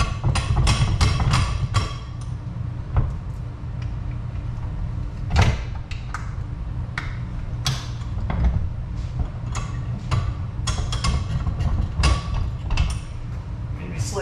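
Irregular clicks and knocks of a bench vise being worked and a heavy laminated wood slab being shifted against the workbench, thickest in the first two seconds and again near the end, with one louder knock about five seconds in, over a steady low hum.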